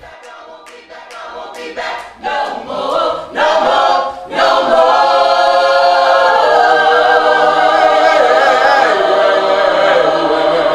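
A cappella vocal ensemble singing gospel in harmony. Short sung phrases swell in the first few seconds, then the voices hold a loud sustained chord from about halfway on.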